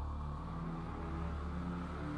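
Slow, dark background music: long held notes over a deep low drone.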